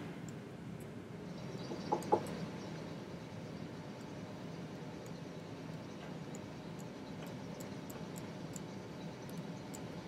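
Quiet room tone of a lecture room with a steady low hum, and a short faint squeak about two seconds in.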